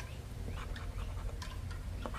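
Poker-chip scratcher scraping the coating off a scratch-off lottery ticket in short, faint scrapes and ticks, over a steady low rumble.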